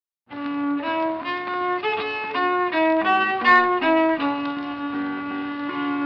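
Old-time fiddle playing the song's instrumental introduction, a bowed melody of short, changing notes that starts abruptly just after the beginning. It has the narrow, dull sound of a 1920s recording.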